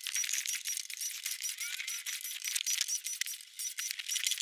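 Cordless drill/driver backing screws out of a TV's plastic back cover: dense rapid clicking and rattling, thin and high with no low end.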